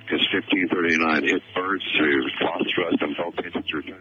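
Speech heard over a radio link: a continuous, narrow, telephone-like voice with the treble cut off.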